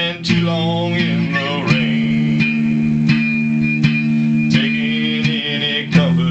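Electric guitar playing an instrumental passage of a slow ballad: chords struck about every two-thirds of a second, each left ringing over steady sustained low notes.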